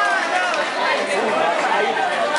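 Audience chattering: many overlapping voices at once, with no single voice clear.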